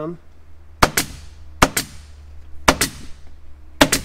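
Upholstery staple gun firing staples through headliner fabric into the metal tack strip: four sharp shots about a second apart, each a quick double crack.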